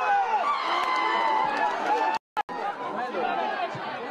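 Many voices shouting and calling over one another at a football match, with crowd chatter underneath. The sound drops out completely for a moment a little past halfway.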